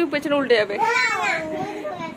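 Young children's voices calling out and chattering in play, high-pitched and rising and falling in pitch.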